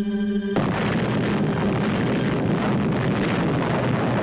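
Atomic bomb explosion rumble, a sound effect on the newsreel soundtrack: about half a second in, a held musical chord is cut off and a dense, continuous rumble of the blast takes over at full level.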